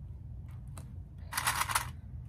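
Small plastic quilt clips being handled: a couple of light clicks, then a brief, louder rattle of clips lasting about half a second near the end.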